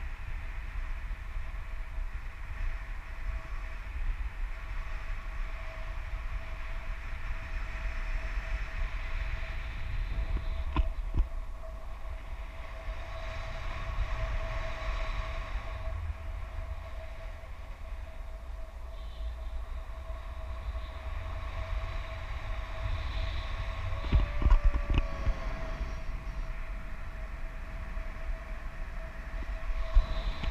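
Airflow buffeting the microphone of an action camera on a tandem paraglider in flight: a steady low rumble with a faint steady whistle over it. There are a few sharp knocks about eleven seconds in and again a couple of times around twenty-four seconds.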